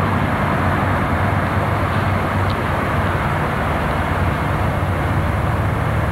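Steady low rumble of road traffic, with no strokes or changes.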